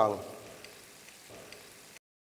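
Dipping sauce of water, fish sauce, vinegar and sugar simmering in a frying pan over fried shallots and garlic, a faint, steady sizzle.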